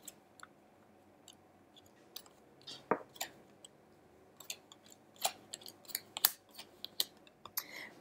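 La Vera Sibilla oracle cards being dealt one at a time and laid down on a wooden table: scattered soft taps and card snaps, the sharpest about three seconds in.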